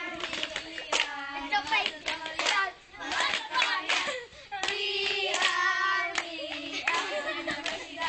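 A group of children singing a chant together while clapping their hands in time, the claps coming as a regular run of sharp strokes under the singing.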